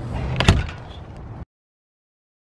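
A door shutting, with one sharp knock about half a second in; the sound cuts off abruptly about a second later.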